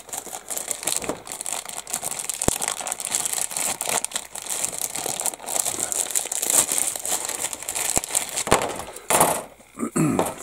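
Clear plastic bag crinkling and rustling as hands handle it and open it to get at the grey plastic model-kit sprues inside, with a louder crackle near the end.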